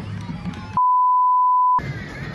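A censor bleep: one steady, high beep lasting about a second, starting a little under a second in, with all other sound cut out while it plays. Before and after it, outdoor crowd noise from the street parade.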